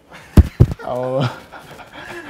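Two loud, sharp thumps a fraction of a second apart, then a man's short rising vocal sound and breathy laughing.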